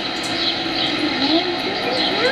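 Steady background hiss of an old camcorder recording, with a faint voice gliding up in pitch in the second half.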